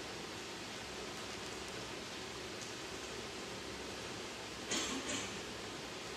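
Steady low hiss of room tone, with a brief soft noise near the end.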